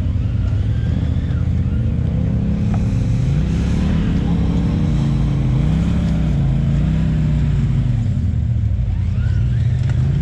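Polaris RZR side-by-side's engine working at low speed over rock ledges, revving up about two seconds in and then rising and falling as the driver feathers the throttle.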